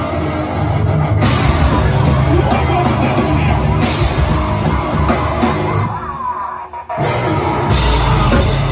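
Heavy metal band playing live, with distorted electric guitars, bass and a pounding drum kit. The music drops out briefly about seven seconds in, then the full band comes crashing back in.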